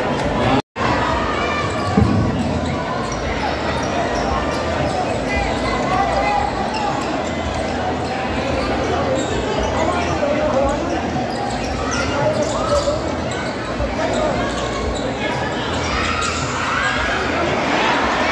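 Basketball being dribbled on a hardwood gym floor in a large, echoing hall, over a steady babble of crowd voices and shouts. All sound cuts out briefly under a second in, and there is a sharp knock about two seconds in.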